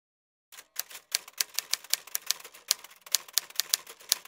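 Typewriter keystroke sound effect: a quick, uneven run of sharp clicks, about five or six a second, starting half a second in.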